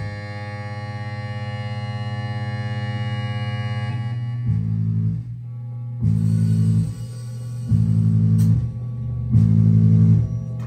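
Live band music: a sustained many-toned drone fades out about four seconds in, then low bass notes start, repeating in held blasts about every one and a half seconds.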